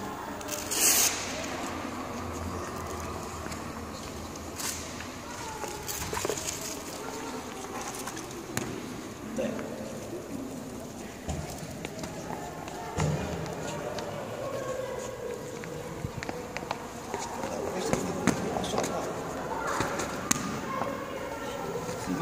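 Indistinct voices echoing in a gym hall, with scattered short knocks of boxing gloves striking in sparring.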